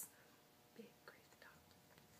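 Near silence: quiet room tone with a few faint, brief sounds about a second in.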